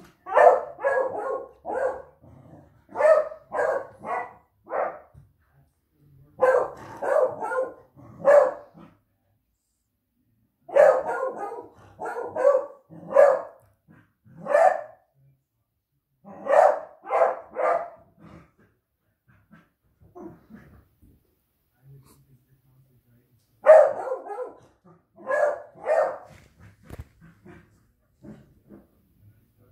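A dog barking in repeated bouts of three to five quick barks, a second or two apart, with a longer pause about two-thirds of the way through.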